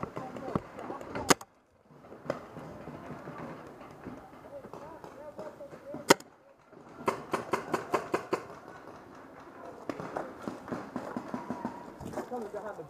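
Paintball marker shots: a single sharp pop about a second in and another near the middle, then a rapid string of about ten pops over some two seconds, with faint voices.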